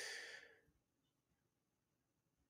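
A man's short sigh, a breath out close to the microphone, fading within the first half second; then near silence.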